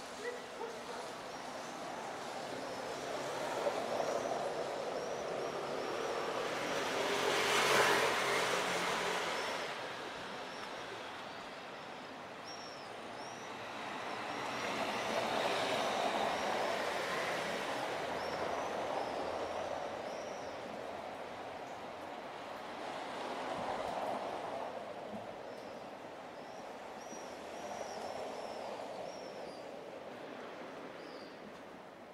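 City street ambience: a broad traffic rumble that swells and fades several times, loudest about eight seconds in, with faint short high chirps in small clusters.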